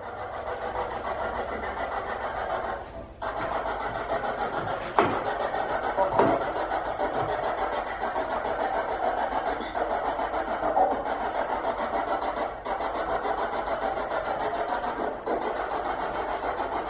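Spirit box sweeping through radio stations: a steady rush of static with a fast, even flutter. A couple of sharper pops come about five and six seconds in.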